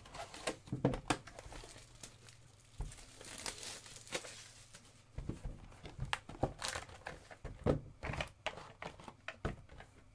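Plastic wrapping being torn open and crumpled on a cardboard trading-card box, with the box handled: a run of crinkles, tearing and small knocks, with a longer tear about three to four seconds in.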